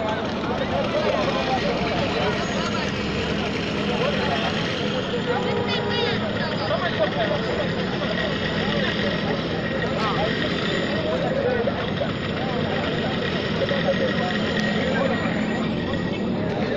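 Voices talking continuously over the steady hum of vehicle engines.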